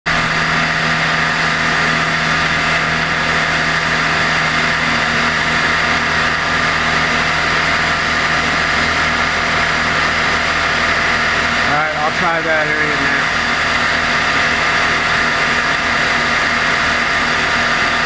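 Water pouring steadily down the side of an overflowing water tower, mixed with the steady hum of an idling vehicle engine. A brief voice comes in about twelve seconds in.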